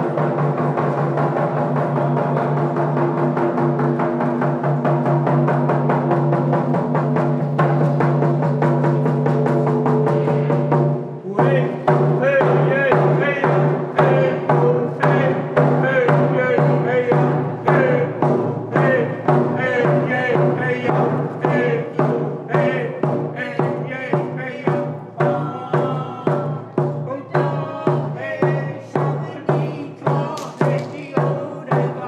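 Hand frame drums and group singing for a ceremonial dance song. For about the first eleven seconds there is a rapid drum roll under long held notes; after that a steady beat of about one and a half strokes a second runs on with voices singing over it.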